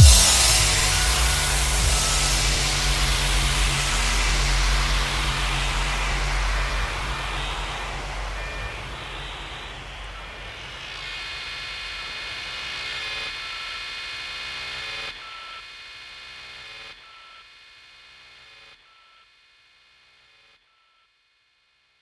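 Progressive trance mix ending: the beat stops on a last hit, leaving a fading noise wash over a held synth chord and bass. A short high synth note repeats every couple of seconds as the music steps down to silence about twenty seconds in.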